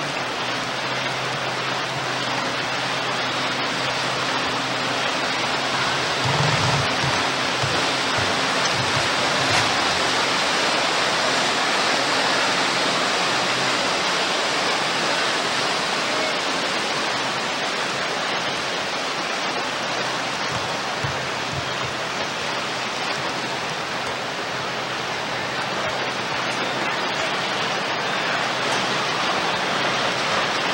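Steady rushing noise of wind and water on a hand-held camcorder's microphone, with a faint steady low hum through the first half.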